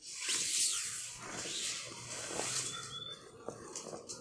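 Rustling of clothing and body on a yoga mat as a person lies down from sitting. It starts suddenly, is loudest in the first second and fades away.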